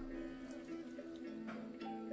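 Quiet background music: held tones with soft plucked-string notes.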